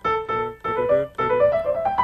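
Keyboard played in three short phrases, the last a rising line of single notes: a phrase being tried out to lead back into a B-minor chord.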